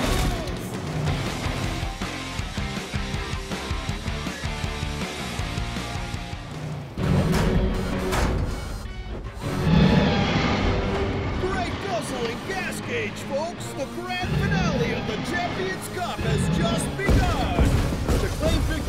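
Cartoon soundtrack: dramatic music with heavy impact and crash sound effects, including several loud low thuds in the second half.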